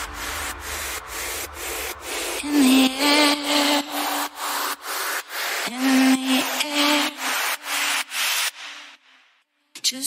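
Electronic dance track in a breakdown: a noisy synth chopped into a fast, even stutter of about four cuts a second, with short pitched synth or vocal phrases over it and the bass gone after the first second or so. It fades out about nine seconds in, leaving a brief silence near the end.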